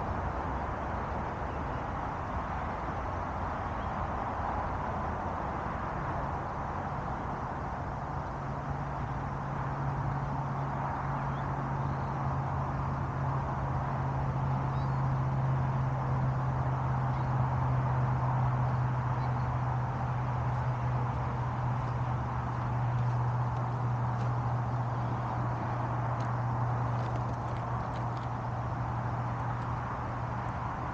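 Steady outdoor background noise with a low, steady hum that comes in a few seconds in, swells through the middle and eases toward the end.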